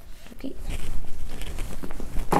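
Rustling of a backpack's fabric and straps being handled and lifted up close, with irregular dull knocks and bumps.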